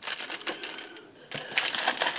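Clear plastic bag around model-kit sprues being handled, a rapid crackle of crinkling clicks that eases off briefly about halfway through and then comes back.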